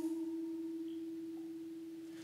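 A single soft held musical note, almost a pure tone, sustained steadily and fading slightly in a pause between sung lines of an acoustic song.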